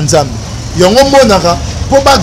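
A man speaking animatedly, with a pause in the first half, over a steady low rumble in the background.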